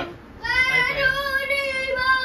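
A child's voice singing, starting about half a second in and holding long, slightly wavering notes.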